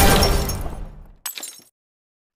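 Intro sound effect: a crash with ringing that fades away over about a second, then a second, shorter crash about a second and a quarter in.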